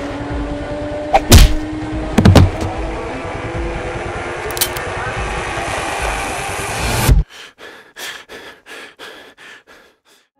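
Dubbed action sound effects: a steady noisy rumble with a faint hum slowly rising in pitch, struck by two sharp heavy impacts about one and two seconds in. The rumble cuts off abruptly about seven seconds in, leaving a run of faint sharp clicks.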